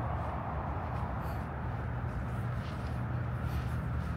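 Steady outdoor background noise: a continuous low rumble with an even hiss above it and no distinct events.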